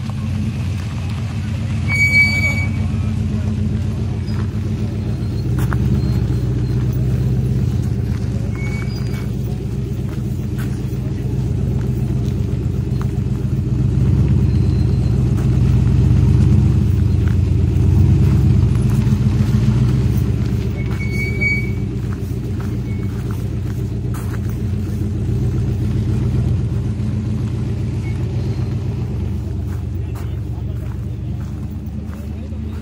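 AC Cobra roadster's engine running at low speed as the car creeps along, a deep continuous rumble that swells a little twice.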